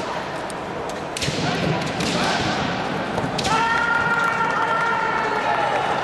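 Bamboo shinai strike and crack in three sharp knocks during a kendo bout. About three and a half seconds in, a kendoka lets out a long, high kiai shout, held at one pitch for over two seconds.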